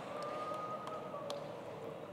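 Audience in a large hall laughing and murmuring after a joke, with a faint steady whistle-like tone over the first second and a half and a few small clicks.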